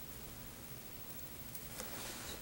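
Quiet room tone with faint handling of tying thread at a fly-tying vise, and two faint soft ticks near the end.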